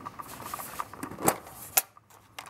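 Hands handling a metal tin of cardboard ink-cartridge boxes: light rattling and tapping, with two sharp clicks in the second half as the lid comes off.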